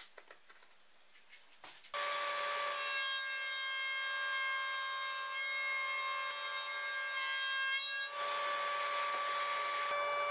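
After about two seconds of near silence with a few light clicks, a router in a router table starts suddenly and runs with a steady whine while a homemade T-slot cutter bit widens a groove in a plywood strip into a T-slot.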